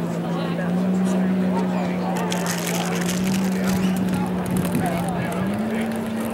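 Outboard racing hydroplane engines running at speed in the distance, a steady drone that steps up in pitch about a second in and again near the end.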